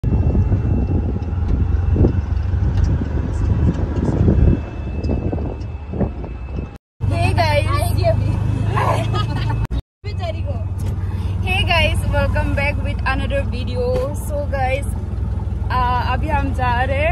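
Auto-rickshaw engine and road noise, a steady low rumble heard from inside the open passenger cab. After a short break about seven seconds in, women's excited voices ride over the same rumble.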